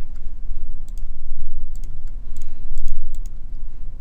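Scattered sharp clicks at a computer, in small clusters about a second apart, over a steady low hum.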